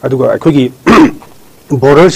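A man speaking in short bursts, broken by a brief harsh sound about a second in.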